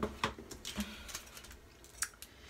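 A few light clicks and rustles from a Crest 3D Whitening Strips packet being handled, mostly in the first second, fading to faint handling noise.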